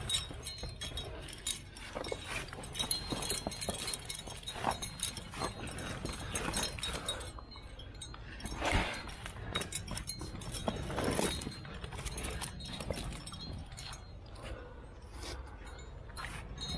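Carabiners and cams on a trad climbing rack clinking and jangling irregularly at the harness as the climber moves up a granite crack, with a few louder scuffs about halfway through.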